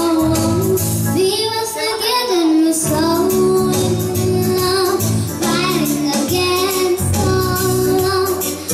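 A young girl singing into a microphone, with her own Yamaha electronic keyboard accompanying her: held notes over a steady bass line and an even beat.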